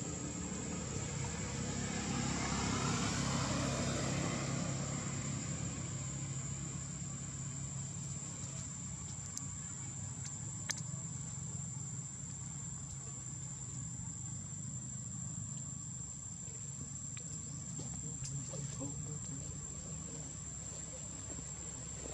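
Outdoor ambience: insects trilling steadily at one high pitch over a low rumble, with a broad rush that swells a few seconds in and fades away.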